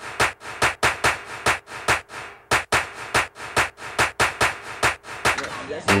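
Percussion-only opening of the backing music: a steady rhythm of sharp drum or clap hits, about four to five a second, with a brief break a little past two seconds.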